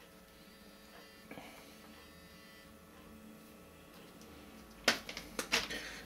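Quiet small-room tone. Near the end come a few short, sharp clicks and rustles from a thick leather guitar strap being handled.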